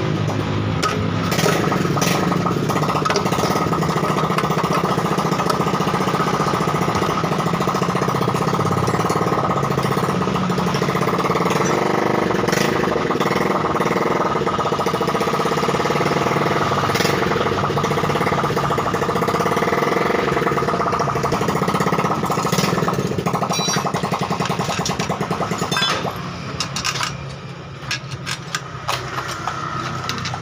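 A motorcycle engine running steadily, which falls away about four seconds before the end, leaving scattered light metal clinks.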